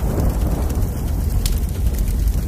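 A loud, steady low rumble with a hiss of noise over it, like a thunder sound effect under the intro title, with a sharp crackle about one and a half seconds in.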